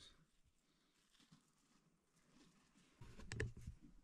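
Near silence, broken about three seconds in by a brief spell of faint clicks and low rustling.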